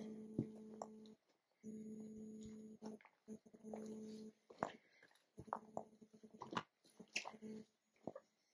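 Soft footsteps on a mossy forest trail, with a few sharp snaps and crunches scattered through. Under them runs a steady low hum that cuts in and out in stretches of a second or two.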